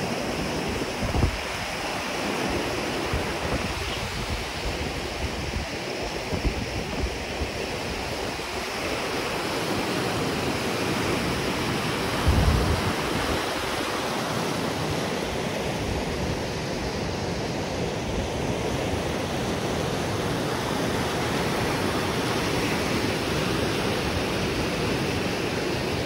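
Fast mountain river rushing over boulders in rapids, a steady, dense sound of whitewater. Two brief low buffets hit the microphone, about a second in and near the middle.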